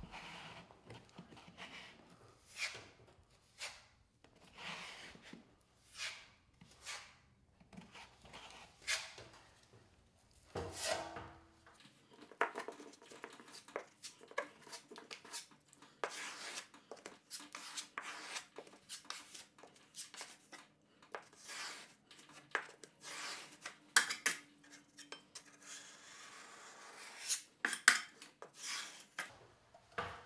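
Steel putty knife packing thick drywall mud into a gap in an inside drywall corner: a long series of short, irregular scrapes and taps of the blade against the board and the mud.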